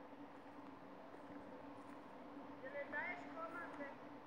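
Faint, distant voice fragments in the last second and a half, over a low steady hum.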